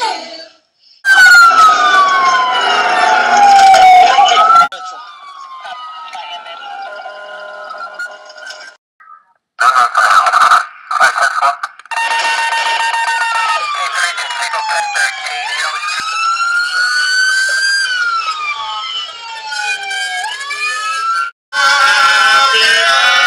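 Several police car sirens wailing at once, their pitches sweeping down and up and crossing over one another. The sound drops out briefly near the start, about nine seconds in, and just before the end.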